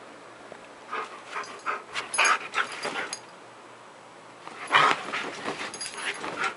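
Siberian husky making short whining, yippy vocal sounds: a run of them about a second in, a pause, then a louder burst near the end as he thrashes about in the bedding.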